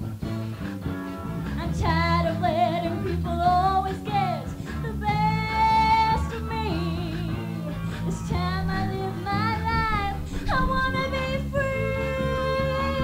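Music: a singer holding long notes with vibrato, changing pitch every second or two, over instrumental accompaniment with a steady low bass.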